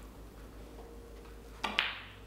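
Snooker cue tip striking the cue ball once, a sharp click about one and a half seconds in, over low room hum. The stroke is, in the coach's judgement, still a little stabby: a short, nervous backswing.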